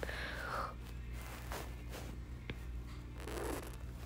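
Quiet room with a few soft breath-like hisses and one small click about two and a half seconds in.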